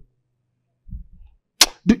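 A pause in a man's amplified speech: mostly quiet, with a few faint low thumps about a second in. Near the end comes a sharp click into the handheld microphone, then the start of the word "Do".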